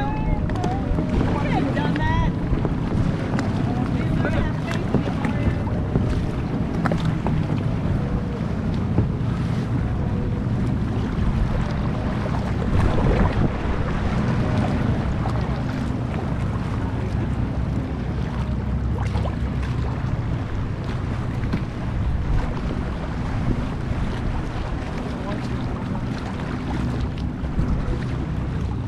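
Wind buffeting an action camera's microphone over open water, a steady low rumble, with water lapping and splashing around a kayak.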